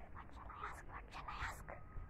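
Faint whispering from a girl, breathy and unvoiced, in short broken phrases.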